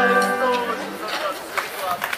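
A live band's last held chord fading out within about the first second, followed by faint indistinct voices.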